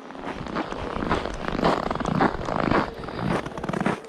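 Footsteps crunching on trodden, frozen snow at a walking pace, about two steps a second.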